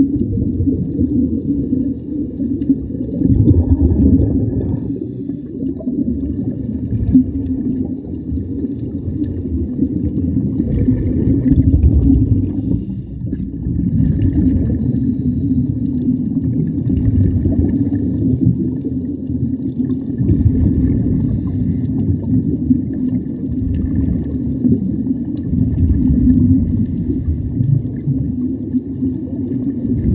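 Underwater sound of scuba divers breathing through regulators, heard muffled through a camera housing: the rush and gurgle of exhaled bubbles surging every few seconds over a steady low drone.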